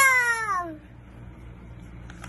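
A young girl's excited wordless shout, one high cry that glides steadily down in pitch and ends under a second in.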